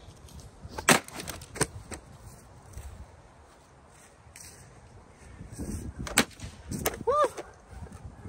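Hard plastic vacuum cleaner parts being smashed: two sharp cracks about a second in and a second and a half in, the first the loudest, then two more near the end.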